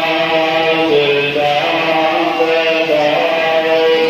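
Sikh devotional singing in a gurdwara, a loud chant-like melody of long held notes that bend gently from one to the next.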